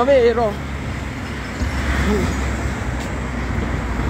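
A steady low rumble of road traffic, growing stronger about one and a half seconds in.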